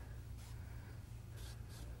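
Faint strokes of a brush dragging oil paint across canvas, a few short swipes pulling paint downward into water reflections, over a steady low hum.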